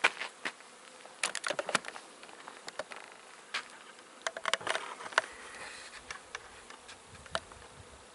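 Honeybees from a large colony in a shed wall, flying about and buzzing, heard as many short, sharp buzzes as single bees pass close by.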